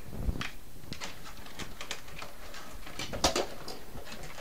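A power cord and plug being handled while it is plugged in: light rustling and scattered small clicks and knocks, with a sharper click a little after three seconds.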